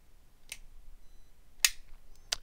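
Two sharp clicks from the Quartermaster QTR-11 TT folding knife's pivot-and-linkage mechanism as the blade is flipped open. The first is faint, about half a second in, and the louder one comes near the end.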